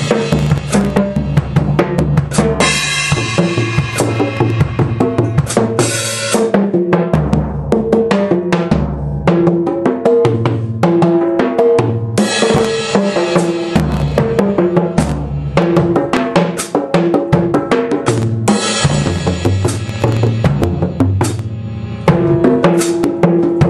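Solo drumming on a large multi-tom rock drum kit: fast runs over toms tuned to different pitches, with bass drum and snare, and three stretches of ringing cymbals, from about two and a half seconds in, around twelve seconds in and around eighteen seconds in.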